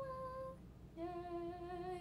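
A young woman's voice holding two long sing-song notes: a drawn-out 'arigatou gozaimaasu' on a higher pitch, then after a short pause a steady, lower held 'yeeei'.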